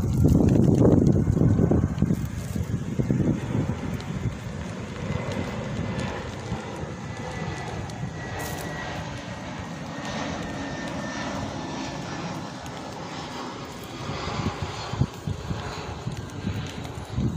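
Jet airliner passing overhead: a steady rumble, loudest in the first two seconds, with a faint high whine that slowly falls in pitch in the middle.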